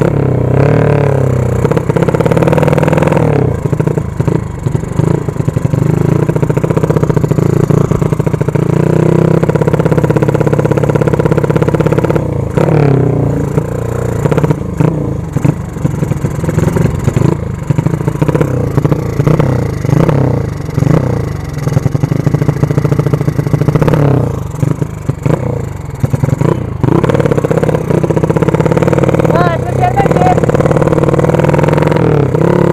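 A 150cc drag minibike ('sleep engine') being ridden, its engine note rising and falling with the throttle. Through the middle and later part the throttle comes on and off in short, choppy bursts.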